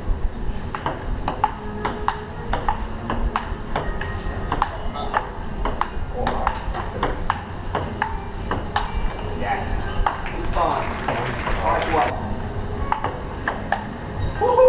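Table tennis rally: the celluloid ball clicking sharply off rubber paddles and the top of a Kettler outdoor table, a long run of quick strikes, two or three a second.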